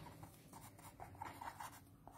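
Pen writing on a sheet of paper on a clipboard: faint, irregular scratching strokes of handwriting.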